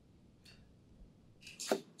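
Quiet room tone, then near the end a short, sharp rushing breath: a man drawing in air before he replies.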